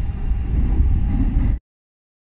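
Low, uneven outdoor rumble, heaviest in the bass, that cuts off abruptly to dead silence about one and a half seconds in.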